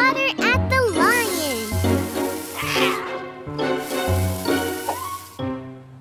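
Upbeat children's cartoon music with a pulsing bass line. It opens with short, wordless vocal sounds that slide up and down in pitch, and a hissing sound effect runs from about one to three seconds in.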